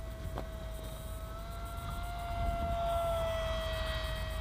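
Electric motor and propeller whine of a Wing Wing Z-84 foam flying wing flying past overhead: a steady tone that rises slightly in pitch and grows louder in the middle, then eases off and sinks a little. A low wind rumble on the microphone lies underneath, with a single small click near the start.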